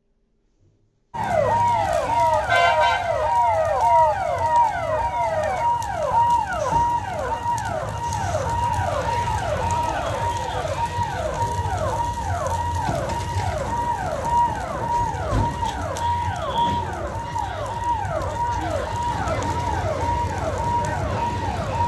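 A fire service vehicle's siren starts about a second in and sounds in rapid, repeated falling sweeps, about two and a half a second, over a low rumble.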